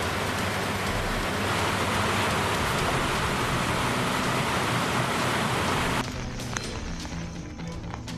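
Water rushing over an overflowing dam spillway, a dense steady noise, under a news bulletin's background music; the water sound cuts off suddenly about six seconds in, leaving only the music.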